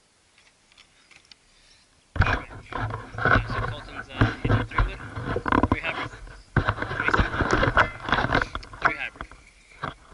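Camera being picked up and moved: loud rustling and scraping of handling right on the microphone, starting suddenly about two seconds in, with a short break past the middle.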